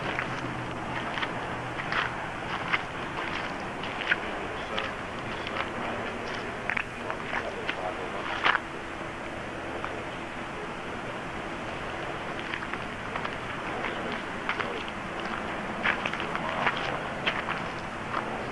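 Faint background voices and scattered short sounds over a steady outdoor background noise.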